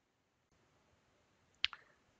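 Faint room tone with a single short, sharp click a little past halfway through.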